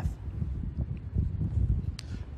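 Gusty wind buffeting an outdoor microphone: an irregular low rumble that swells and drops.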